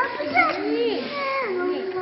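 Young children's high-pitched voices talking and chattering in a room, with two voices overlapping at times.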